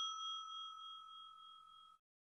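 Bell-like ding sound effect of a subscribe-button animation, its clear ring fading away and dying out shortly before the end.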